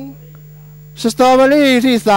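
Steady electrical mains hum in the broadcast audio. A race caller's excited voice comes in over it about a second in.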